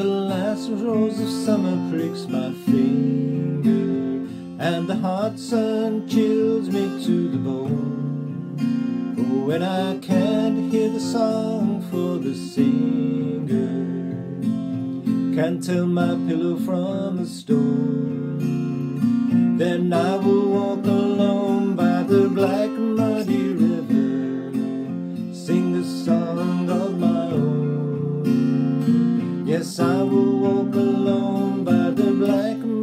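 A man singing a slow song, accompanying himself on a strummed acoustic guitar.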